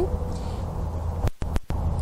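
Low, steady hum of an idling car engine, cut off briefly a little past the middle by a short dropout with sharp clicks.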